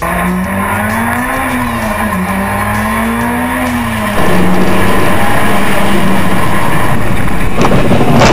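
Racing car engine revving up and down through mountain-road corners, picked up by a hood-mounted camera. About four seconds in, a louder, even rush of tyre and wind noise takes over as the car runs at speed, and near the end sharp knocks and scrapes begin as the car goes off the road.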